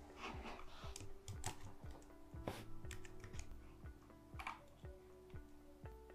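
Faint typing on a computer keyboard: irregular key clicks, over quiet background music.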